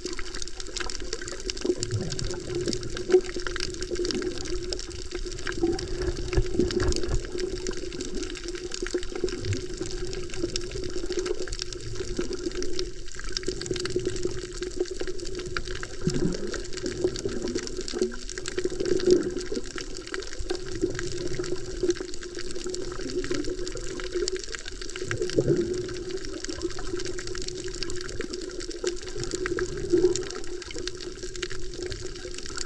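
Underwater sound picked up by a camera held beneath the surface over a coral reef: a steady muffled water wash with a constant low hum and a fine, continuous crackle, swelling softly every few seconds.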